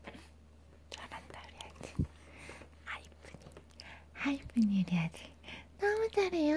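Baby sucking milk from a plastic straw bottle: soft, irregular mouth clicks and breathy sips. In the second half a soft voice murmurs twice, the first low and falling, the second higher and wavering.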